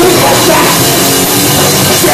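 Hardcore punk band playing live: electric guitar, bass and a drum kit in a steady, very loud wall of sound.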